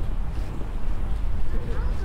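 Wind buffeting the microphone: a low, uneven rumble, with faint voices in the background near the end.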